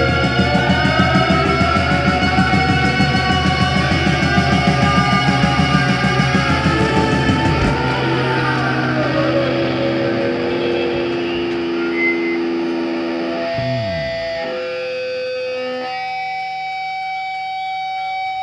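Live rock band with distorted, effects-laden electric guitars playing loud and fast over a driving beat. About seven seconds in the beat stops, leaving sustained guitar tones, with a falling pitch glide about fourteen seconds in and long held notes after it.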